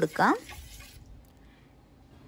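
A steel spoon stirring lemon juice in a stainless steel bowl: a faint liquid swish lasting about half a second, just after a spoken word ends.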